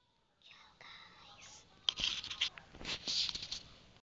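Close-up whispering into the microphone, breathy and without voice. A sharp click comes about two seconds in.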